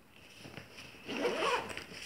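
Zipper on a fabric insulated lunch bag being pulled shut, a short raspy zip about a second in.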